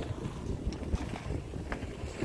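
Wind buffeting the microphone: an uneven low rumble.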